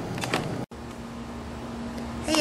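After an abrupt cut a little under a second in, a steady low mechanical hum with a faint even background noise.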